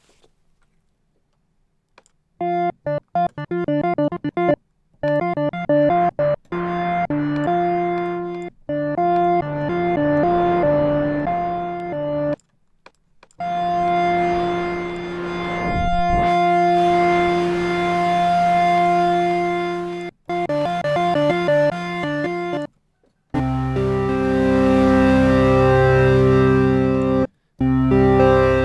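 Native Instruments FM8 software synth playing an additive pad patch of slightly detuned sine, square and sawtooth operators, with a little noise operator mixed in for hiss. First come quick repeated short notes, then long held notes and chords, and near the end a lower, fuller chord. The notes start and stop abruptly, because the envelope is fairly short and sharp.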